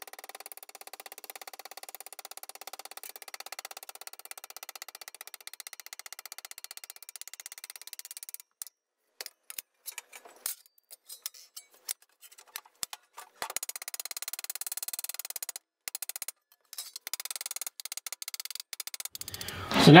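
Rapid light hammer taps on sheet steel, folding a flange over the edge of a steel table and tapping it flat. The strikes come quickly and densely at first, then break up into scattered taps with short pauses after about the middle.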